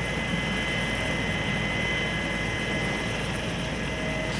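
Air ambulance helicopter running on the ground with its rotor turning: a steady, even engine whine over a constant rush of noise.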